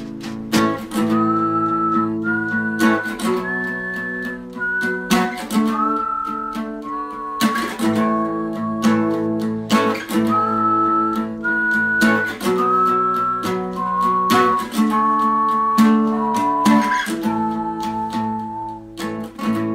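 Soundtrack music: strummed acoustic guitar under a whistled melody of held, gliding notes.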